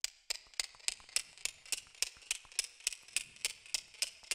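Rapid, evenly spaced sharp clicks, about three and a half a second, like a mechanical ticking.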